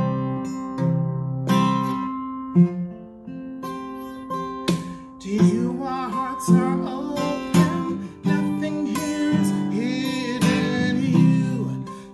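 Steel-string acoustic guitar strummed and picked in slow chords, with a man singing along from about five seconds in.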